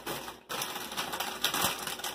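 Plastic snack packaging crinkling and rustling as it is handled, with a brief pause about half a second in.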